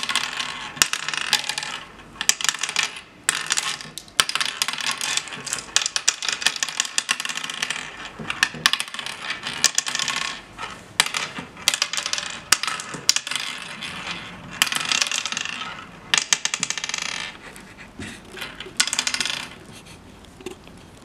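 Oware seeds clicking and clattering into the hollowed pits of a wooden oware board as they are picked up and sown one by one. The clicks come in quick runs a second or two long, with short pauses between moves.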